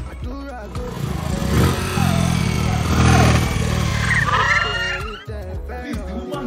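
A vehicle engine running loudly under background music and voices. It swells about a second and a half in and cuts off abruptly about five seconds in.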